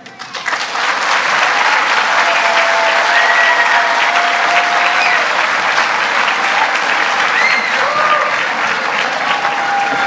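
Audience applauding, rising about half a second in and holding steady, with a few cheers and whoops above the clapping.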